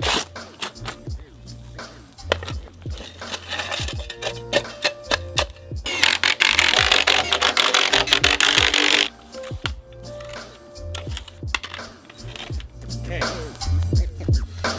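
Background music with a steady bass beat, and a cordless impact driver hammering a fastener into a deck beam for about three seconds in the middle.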